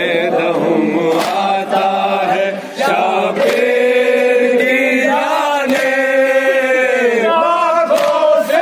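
Men's voices chanting a noha, a Shia mourning lament for Imam Husayn, together in long, held, wavering melodic lines. A few short sharp knocks cut through the singing.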